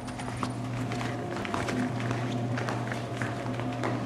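Footsteps on a hard indoor floor, an irregular run of quick taps from several people walking, over a steady low electrical hum.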